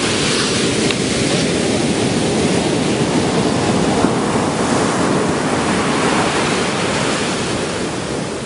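Ocean surf breaking and washing on a beach, a steady rushing noise.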